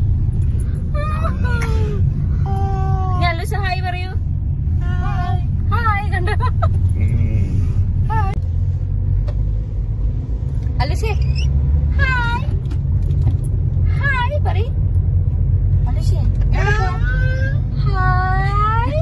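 Steady low road and engine rumble inside a moving car's cabin, with short, high-pitched voice sounds from a young child breaking in now and then.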